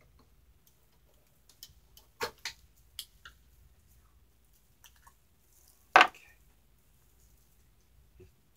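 A few light clicks and knocks, about two to three seconds in and again near five seconds, from handling a metal hand injector used for pouring soft-plastic lures. A short spoken 'okay' comes near the end.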